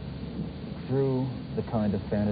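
A man's voice speaking, starting about a second in, over a steady low rumble and hiss from an old television recording.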